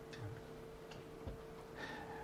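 Quiet pause with a faint steady hum and a few soft, irregular ticks.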